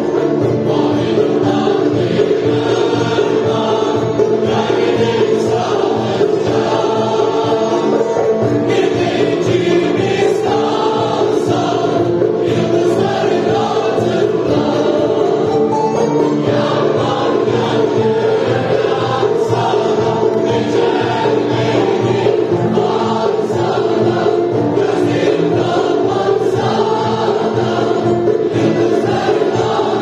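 Mixed choir of women and men singing a Turkish art music song, accompanied by ouds and a long-necked bağlama.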